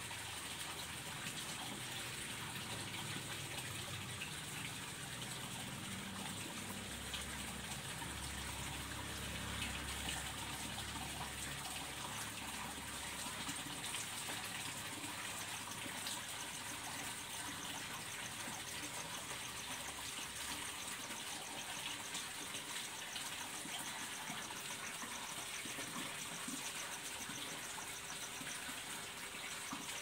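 Steady rush of running water, even and unbroken.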